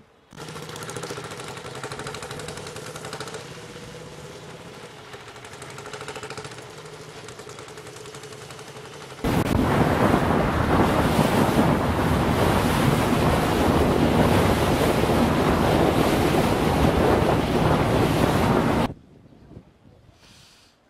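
Street traffic with a steady engine hum for about nine seconds. Then a sudden cut to loud, steady rushing wind and sea noise on the microphone, filmed on the water among fishing boats, which stops abruptly about a second before the end.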